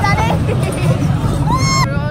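Children on a theme-park ride squealing and calling out with excitement, a long high squeal near the end, over the steady low rumble of the moving ride.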